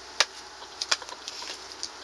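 A handful of light, sharp taps scattered over about two seconds, over a low steady outdoor background.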